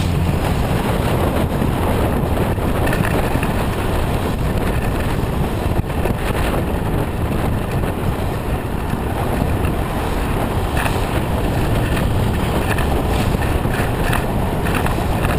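Steady wind rush and road rumble picked up by a camera riding on a bike-share bicycle in motion, with a few faint knocks from bumps in the road.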